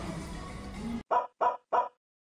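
Soft background music that cuts off about a second in, followed by three short, evenly spaced pitched calls, an animal-like sound effect, about a third of a second apart.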